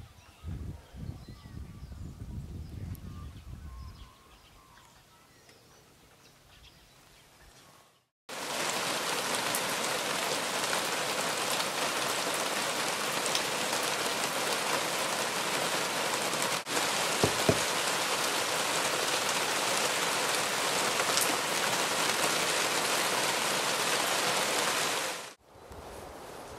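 Steady rain falling, a loud, even hiss that starts abruptly about eight seconds in and cuts off shortly before the end. Before it there is only a faint outdoor background with a few soft bird chirps.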